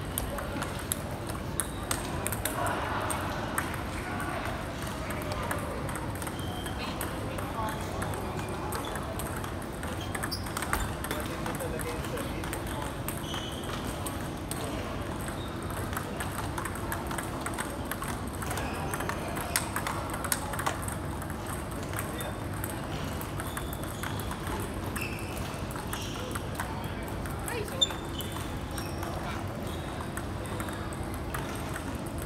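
Table tennis ball knocked back and forth in a rally: a run of sharp light clicks as the plastic ball strikes the bats and the table, over a steady murmur of voices.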